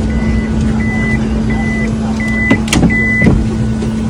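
A car's warning chime beeping: five short, even beeps at one pitch about 0.7 s apart from the MPV with its sliding side door open. A few knocks come near the middle.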